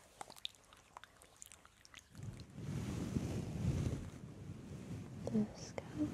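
Hands slick with hair oil rubbing close to the microphone to warm the oil. A few faint sticky clicks come first, then, about two seconds in, a steady, crackly rubbing takes over.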